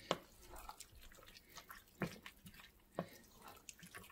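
A wooden spoon stirring a thick, wet rice-and-vegetable mixture in an enamelled cast-iron braiser: soft wet squelching with scattered faint clicks. Sharper knocks of the spoon against the pan come at the start, about two seconds in and about three seconds in.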